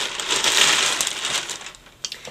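Plastic shopping bag crinkling and rustling as a pair of ankle boots is pulled out of it, a dense crackle that dies away near the end.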